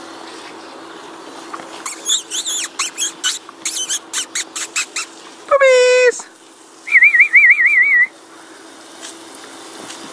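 Puppies yipping during rough play: a string of short, high yips, then a loud drawn-out squeal about five and a half seconds in, with pitch dropping at its start. A brief warbling, whistle-like tone follows about seven seconds in.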